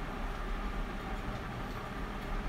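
Steady low background rumble with a faint hiss, with no distinct event.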